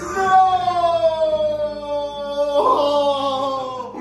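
A man's long drawn-out wail in two held cries, each sliding slowly down in pitch; the second starts a little before three seconds in.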